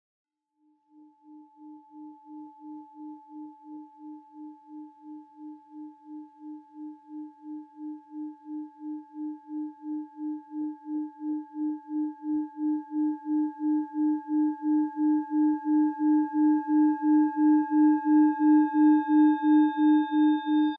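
Singing bowl rubbed around its rim: a low hum pulsing about twice a second under a steady higher ring, swelling steadily louder.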